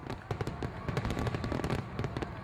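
Fireworks crackling and popping in a rapid, irregular string of sharp cracks.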